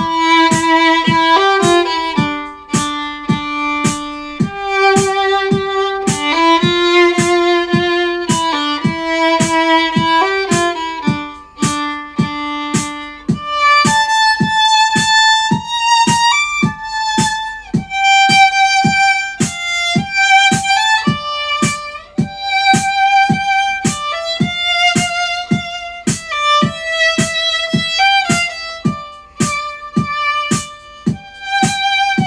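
Solo violin playing a quick, cheerful melody in even short notes, with a steady tick keeping the beat beneath. The melody moves into a higher register about halfway through.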